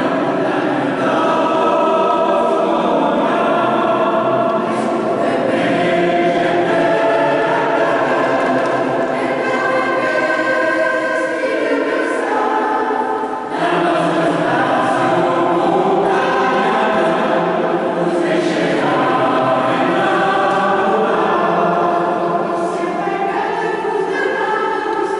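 Mixed choir of men and women singing with orchestral accompaniment, in long sustained chords, with a short break between phrases about halfway through.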